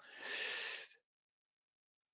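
A man's audible breath into a close microphone, lasting about a second.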